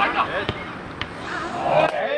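Footballers shouting on the pitch, with two sharp thuds of the ball being kicked about half a second and a second in, and a louder shout near the end.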